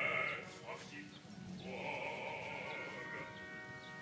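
Operatic singing with a wide vibrato, over instrumental accompaniment. A long note is held from a little under halfway through.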